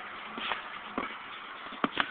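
Handheld camera being swung around and handled outdoors: a steady background hiss with a few soft knocks and one sharp click near the end.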